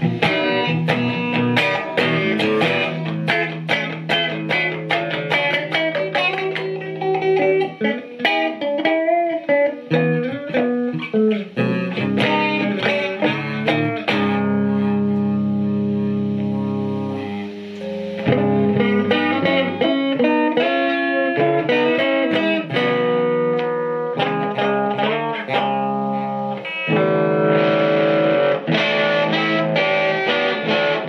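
Electric guitar played through an Alamo Fury tube combo amp with a 15-inch speaker (7189 power tubes, 12AX7 phase inverter): picked single-note lines and chords, with one chord left ringing for about three seconds around the middle.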